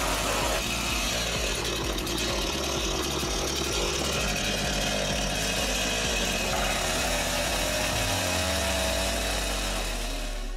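Petrol chainsaw running at high revs and cutting into a wooden pallet board, loud and steady, its engine note shifting a little near the end.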